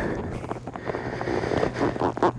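Wind on the helmet-mounted microphone, a steady rushing noise with faint rustles.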